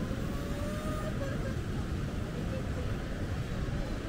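Steady low rumble of seaside wind and surf, with faint voices of people nearby.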